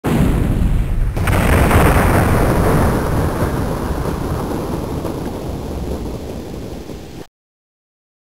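Thunder-crash sound effect: a sudden loud crack, a second crack about a second in, then a long low rumble that slowly fades and cuts off abruptly near the end.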